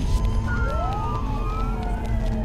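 Emergency sirens wailing, several rising and falling tones overlapping and crossing, over a deep rumble.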